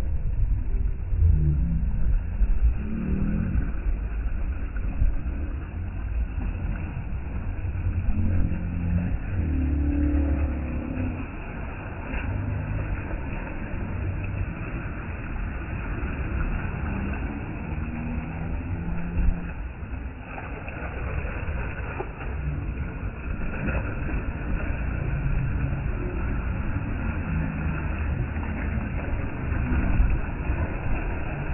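Small waves lapping and splashing against a concrete embankment, with strong wind buffeting the microphone in a continuous low rumble.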